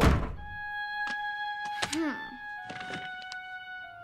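A door shutting with a thud at the start, then soft background music of long held notes with a few light ticks over it.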